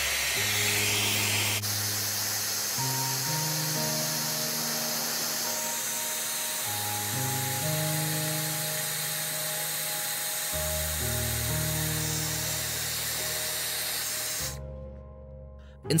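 A handheld hairdryer blowing a steady hiss of hot air onto a smartwatch display to warm it before prying it open. The hiss cuts off suddenly a little before the end. Background music with long sustained notes plays throughout and fades out near the end.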